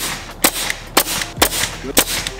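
Pneumatic nail gun firing four times, about half a second apart, each a sharp crack as it drives a nail through a glued trim board into a door panel.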